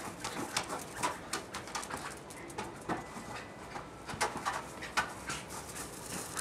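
Small terrier nosing and pushing a basketball across a lawn: irregular quick taps and clicks, with a few short pitched sounds mixed in.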